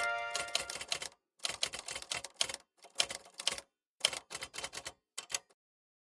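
Typewriter sound effect: runs of rapid key clacks in several short bursts with brief pauses, stopping about five and a half seconds in. The tail of the opening music fades out in the first half second.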